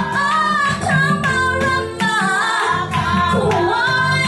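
A woman singing a church praise song through a handheld microphone, with a sustained, gliding melody over an instrumental backing that has a steady beat.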